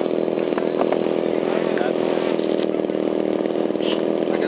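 A small engine running steadily, a continuous drone, with a short high beep just after the start and a few light clicks.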